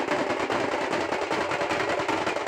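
Several large double-headed barrel drums beaten with sticks together in a fast, dense rhythm, the strokes running into one another without a pause.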